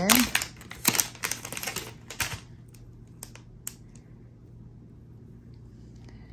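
A plastic pen packet being torn and pulled open by hand: a quick run of crinkles and clicks for about two seconds, then a few separate clicks over a low steady hum.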